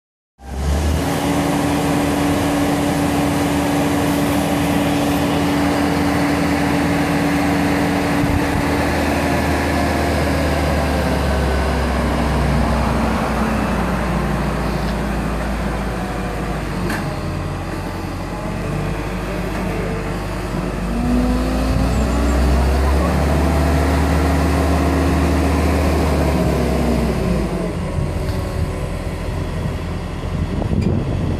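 Diesel engine of a telehandler running steadily with a deep hum, its pitch sinking for several seconds past the middle and climbing again a little later as the revs change.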